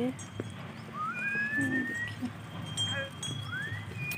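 A flock of sheep and goats on the move along a gravel road. A herder whistles a long rising whistle about a second in and a shorter rising one near the end.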